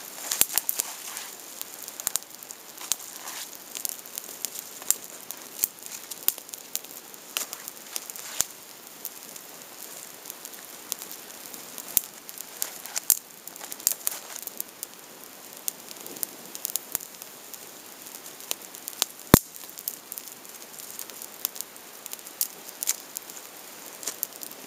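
Small, freshly lit campfire of twigs crackling, with irregular sharp pops scattered throughout and one louder pop a little past two-thirds of the way through.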